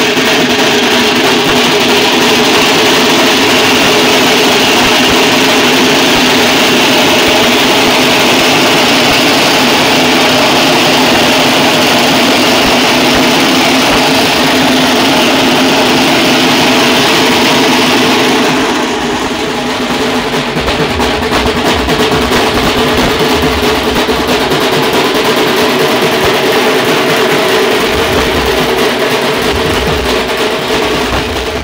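A band of dhol drums beaten with sticks, playing continuously and loudly. About nineteen seconds in, the sound thins slightly and deeper beats come through.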